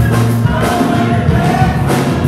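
Gospel choir singing over a live band, with steady bass notes and regular drum hits underneath.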